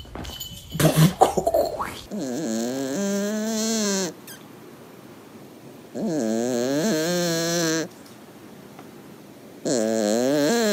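A sleeping tabby kitten snoring: long pitched, buzzy snores about two seconds each, one roughly every four seconds with quiet gaps between. Before the first snore there is a short burst of loud knocks and rustling.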